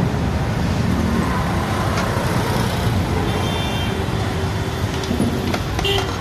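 Steady low rumble of road traffic and vehicle engines, with a few faint short clicks.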